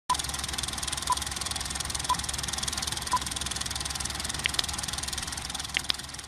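Film projector sound effect: a fast, steady clatter with a short beep once a second, four times, like a film countdown leader. A few faint ticks come near the end, and the clatter begins to fade.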